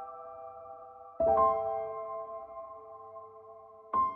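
Slow, soft solo piano background music: a held chord fades out, and a new chord is struck about a second in and left to ring down.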